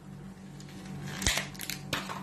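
Short handling noises as a plastic yogurt pot is opened: a soft knock about a second in, then a couple of brief scraping rustles, over a low steady hum.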